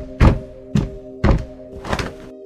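Four heavy thuds, about half a second apart, as a sound effect over held, sustained ambient music chords.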